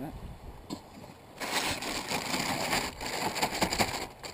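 A plastic bag crinkling and rustling as it is handled and twisted closed, starting about a second and a half in.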